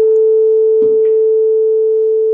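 Tuning fork tuned to concert pitch A (440 Hz), mounted on a wooden resonance box and freshly struck with a mallet, ringing as one loud, steady pure tone. There is a faint knock just under a second in.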